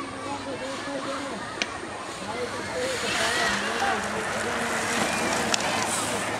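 Crowd of trackside spectators calling out and cheering over one another at a youth BMX race, growing louder about halfway through. Two sharp clicks.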